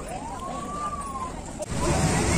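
A single whistle-like tone that rises and then falls over about a second, over a background of crowd chatter; near the end the sound cuts abruptly to louder chatter.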